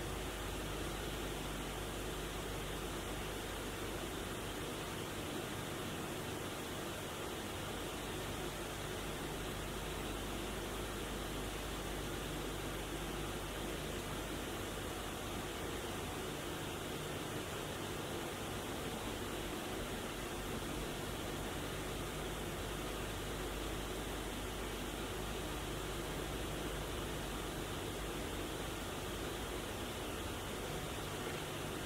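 Steady, even hiss with a faint low hum underneath, unchanging throughout, with no distinct events.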